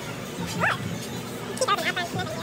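Small dog giving high-pitched yips and a whine: one short rising whine about half a second in, then a quick cluster of yips near the end.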